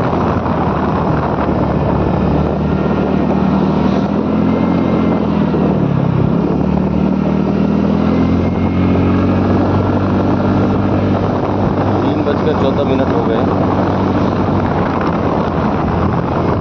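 Motor scooter engine running under way, its pitch sagging about six seconds in and then climbing again as the throttle eases and opens, with wind noise on the microphone.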